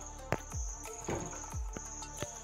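Insects chirping in a high, steady trill, with a few soft low thumps.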